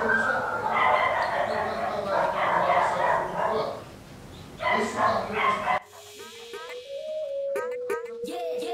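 Background voices and whining, yipping animal sounds for most of the stretch, then about six seconds in, electronic music cuts in with a held note that steps in pitch and short sliding tones above it.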